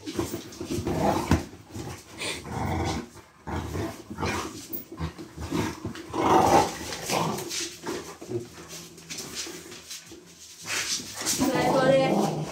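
A large black-and-tan dog vocalising in repeated short bouts, growl-like grumbles while it works its nose at the side of a sofa, the loudest about halfway through and again near the end.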